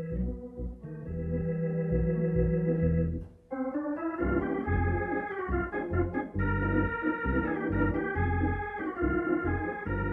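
Hammond C3 organ playing held chords over a bass line. There is a short break just after three seconds in, then fuller chords take over.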